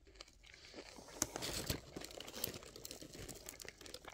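Chip-shop paper wrapping crinkling and rustling as it is handled, faint and irregular, with a sharper crackle about a second in.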